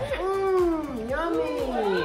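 A voice making two drawn-out wordless vowel sounds, about a second each, each sliding down in pitch.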